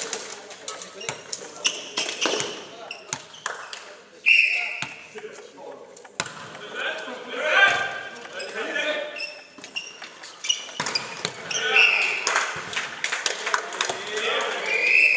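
Volleyball rally in a sports hall: a string of sharp impacts from the ball being struck and landing, mixed with players' shouted calls.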